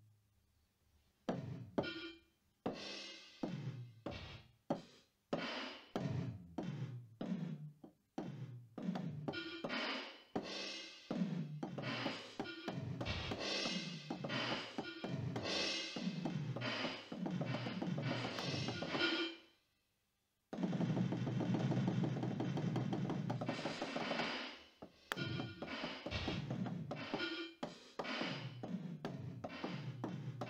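Roland SPD-20 electronic percussion pad struck with drumsticks, triggering drum samples in a fast, irregular improvised pattern. Many of the strikes drop in pitch as they ring, like electronic toms. There is a brief silence about two-thirds of the way through, then a dense, unbroken run of sound for about three seconds before the separate strikes resume.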